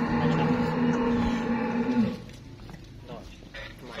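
Cattle mooing: one long, steady call that ends about two seconds in.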